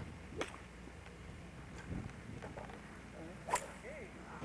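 Two sharp clicks of golf clubs striking balls on a driving range, the second, about three and a half seconds in, the louder.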